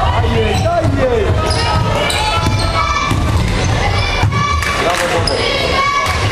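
Basketball game on a hardwood court: a ball bouncing and sneakers squeaking in short curved chirps as players cut and stop, with voices calling.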